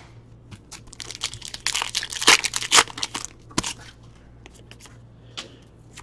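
Crinkling and tearing of a trading-card pack wrapper as it is opened and handled: a dense crackly burst lasting about three seconds, then a few scattered clicks.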